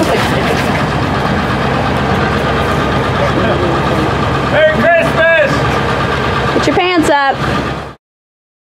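A vehicle engine idling steadily, with a few brief voices calling out twice in the second half. The sound cuts off suddenly at the end.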